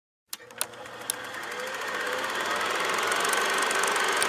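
Film projector running: a rapid, even mechanical clatter that starts with a few clicks and builds in loudness over the first couple of seconds.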